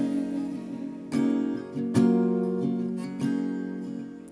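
Acoustic guitar strummed, a handful of chords struck roughly every half second to second, each left to ring and fade between strokes.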